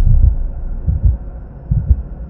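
Logo sound effect: a series of deep bass thumps at an uneven pace over a low rumble, fading away.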